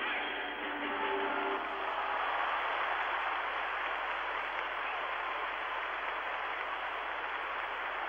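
Arena audience applauding steadily, while the last notes of the skating program's music die away in the first two seconds. Heard through a narrow-band 1972 television broadcast.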